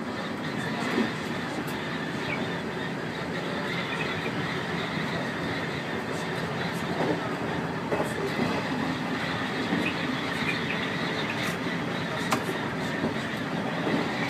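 Electric train running at speed, a steady rumble of wheels on rail heard from inside the front of the train, with scattered sharp clicks.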